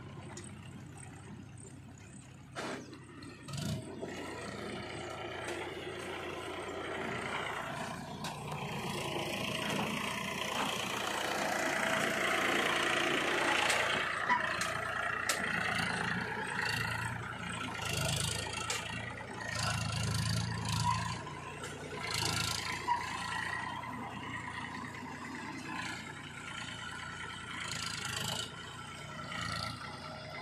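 Diesel tractor engines running and pulling through mud, with scattered clattering from the machinery. The engine grows louder over the first several seconds, then rises and falls.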